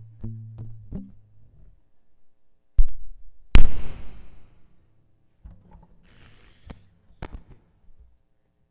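Acoustic guitar: a few low notes plucked and left to ring, then two loud thumps about half a second apart with a ringing tail. More quiet string noises and clicks come near the end.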